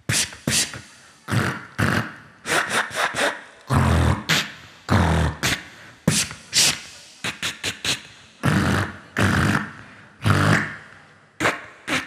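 Beatboxing: mouth-made kick drums, snares and hi-hat sounds in short uneven phrases, with a few deep kicks, each stroke echoing through a large hall.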